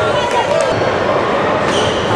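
Basketball game sounds in a gym: the voices of players and spectators mixed with the ball bouncing on the court.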